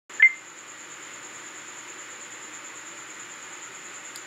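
A single short electronic beep about a quarter second in, followed by steady hiss with a faint, constant high-pitched whine.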